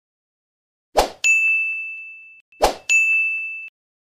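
Two subscribe-button sound effects about a second and a half apart, each a short sharp hit followed by a single high notification ding that fades and then cuts off.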